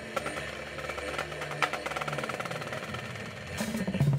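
Drum corps percussion section playing: a fast, even run of drum strokes over low held notes from the front ensemble, with heavier drum hits coming in near the end.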